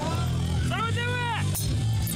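Background music with a steady bass line, a voice holding one long drawn-out call in the middle, and a single sharp knock shortly after it.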